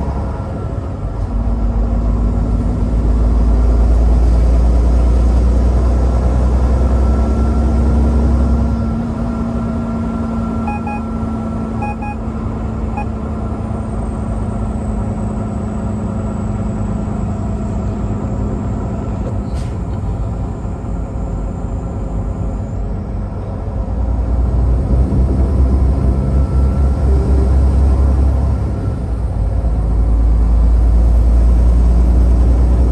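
Steady drone of a semi-truck's engine and road noise heard inside the cab at highway speed, with a heavier low rumble for several seconds near the start and again near the end. A few short electronic beeps sound around the middle.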